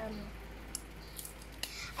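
A few faint, short clicks and crisp rustles as small paper stickers are handled and peeled by hand, about halfway through.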